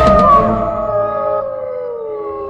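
A dog howling: one long drawn-out howl that slowly falls in pitch and fades away.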